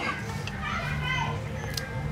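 Children's voices talking and playing, with a short sharp click near the end.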